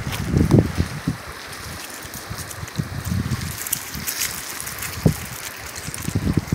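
Wind buffeting the microphone in uneven gusts, with scattered light clicks and crunches of creek-bed cobbles shifting underfoot, busiest around the middle and with one sharper click near the end.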